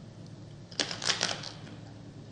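Crunching of a crisp homemade fried tortilla chip (totopo) being bitten and chewed: a short cluster of crackles about a second in.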